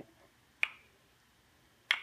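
Two sharp wooden clicks about a second and a half apart: the purpleheart kendama's ball knocking against the ken as it is handled.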